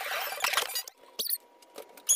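High-pitched squeaks, thickest in the first second, with a short burst a little after the middle before the sound drops away.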